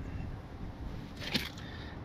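A brief hiss of air, about a second in, as a pencil-type tire pressure gauge is pushed onto a motorcycle's valve stem, over a low steady outdoor rumble.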